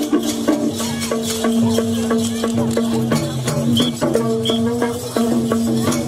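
Nepali folk music for the Mayur (peacock) dance: a melody stepping between a few notes over a held low note, with fast, dense rattling and clicking percussion.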